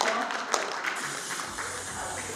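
Audience applauding, with scattered sharp claps. Music comes in about one and a half seconds in.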